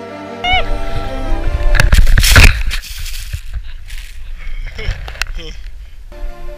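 Snow and wind rushing against an action camera on a snowboarder, cutting in suddenly about half a second in and loudest about two seconds in, with knocks and scrapes. After that a person's voice and laughter come through the noise.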